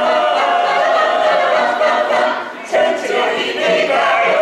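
Mixed choir of men's and women's voices singing together in sustained notes, with a short break between phrases about two and a half seconds in before the choir comes back in.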